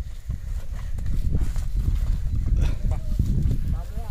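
Bullocks' hooves stepping and shuffling on a dirt track as they move a sugarcane-loaded bullock cart, with scattered knocks over a steady low rumble.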